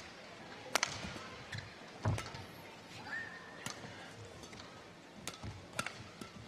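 Badminton rally: rackets striking the shuttlecock in sharp cracks about every second and a half, over a steady arena murmur, with a brief high squeak near the middle.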